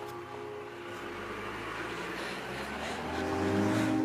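A car pulling away, its engine and tyre noise growing louder toward the end and then cutting off.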